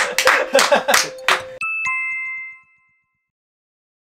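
Laughter cut off abruptly, then a two-note electronic chime sound effect, the second note lower, ringing out briefly, followed by dead silence: an edit marking a transition to a title card.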